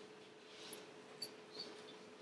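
Near silence: room tone with a faint steady hum and a few faint, brief high clicks.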